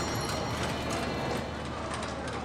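Horse hooves clip-clopping on a street, with crowd chatter in the background.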